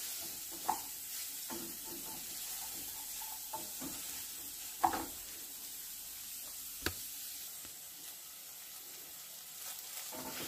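Diced bacon, calabresa sausage and onion sizzling steadily as they fry in oil in a saucepan, with a few sharp knocks of the stirring utensil against the pan.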